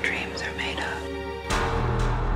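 Horror trailer soundtrack: a whispered word over a low, dark drone, then about one and a half seconds in a sudden deep bass hit that carries on as a loud low rumble.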